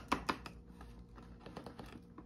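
Paper coffee bag rustling in quick, even strokes, about six a second, as ground coffee is shaken out of it into a glass canister. The strokes fade out about half a second in, leaving a few faint ticks.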